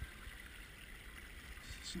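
Shallow stony burn running and trickling over stones: a faint, steady water sound with a low rumble underneath.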